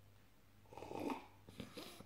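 A faint sip of beer from a glass and a swallow, followed by a few small mouth clicks.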